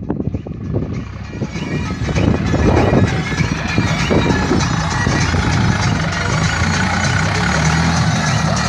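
Swaraj 744 XM tractor's diesel engine running steadily under load as it hauls a fully laden soil trolley, with music playing over it.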